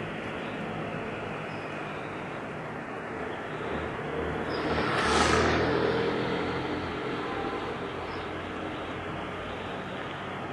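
Steady low motor hum, with a motor vehicle passing close by midway: it swells for about a second and a half, peaks, and fades away over the next two seconds.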